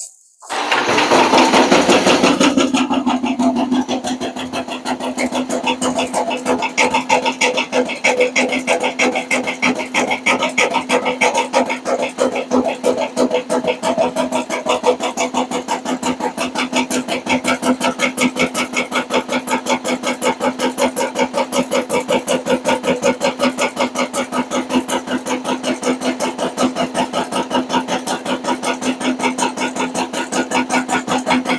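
Homemade drill-powered shaker sifter for worm castings starting up about half a second in, then running steadily: the drill motor hums under a fast, even thumping rattle of the wooden screen frame. The thumping shakes the screens clear so they don't plug up and keeps the compost moving down the trays.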